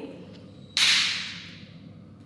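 A sudden loud hiss about three-quarters of a second in, fading away over about a second.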